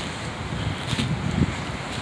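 Wind buffeting a phone's microphone outdoors: an uneven low rumble that rises and falls, with no voice over it.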